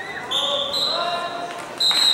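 Referee's whistle blowing twice: one blast of about a second starting a third of a second in, and another starting near the end, over crowd chatter in a gym.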